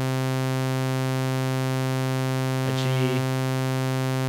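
Bitwig Polysynth oscillator sounding a plain sawtooth wave on one held C note, a steady unchanging tone with both odd and even harmonics.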